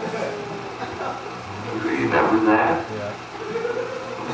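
Indistinct voices over a steady low hum, with a louder stretch of voice about two seconds in.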